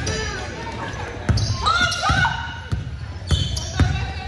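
A basketball dribbled on a hardwood gym floor, a few hard bounces echoing in a large hall, with voices of players and onlookers calling out around it.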